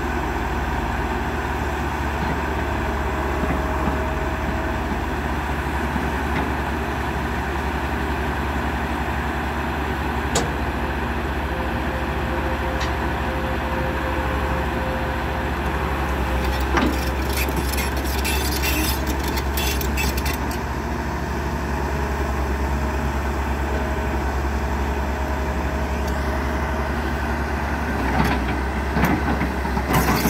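Tata Hitachi 200 excavator's diesel engine running steadily under load as the machine crawls backward off a trailer on its steel tracks. Sharp clanks come now and then, with a run of rattling clatter past the middle and a few knocks near the end.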